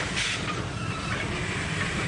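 Steam locomotive pulling a train into a station: a steady rumble of the running train, with a hissing chuff of steam exhaust shortly after the start.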